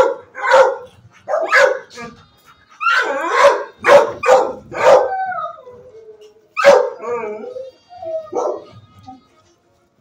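Dog barking in a shelter kennel: a string of loud, sharp barks, then a few longer barks that bend in pitch, stopping about nine seconds in.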